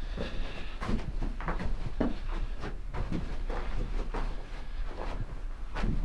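Footsteps crunching over loose rock rubble on a mine floor: a string of short, irregular crunches and clicks.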